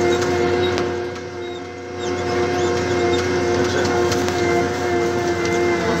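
McCormick XTX tractor engine running steadily under load as it pulls a heavy disc harrow through wet ground, a constant droning hum heard from inside the cab. It dips in loudness briefly about a second and a half in, then comes back up.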